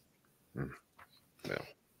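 Two brief, quiet vocal murmurs from a man: a low "hmm" and then a "yeah" about a second later.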